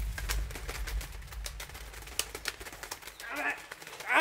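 Quiet woodland ambience with scattered short, irregular clicks and chirps. A person's voice is heard briefly near the end.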